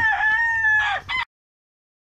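Gamefowl rooster crowing: the long held final note of its crow dips in pitch near its end about a second in, a short last note follows, and then the sound cuts off abruptly.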